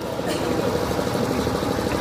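A steady, even drone like an idling engine, with outdoor background noise and no voice.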